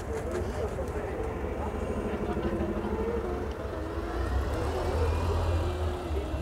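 People chatting over a low steady rumble of street traffic, the rumble swelling for a second or so about four seconds in.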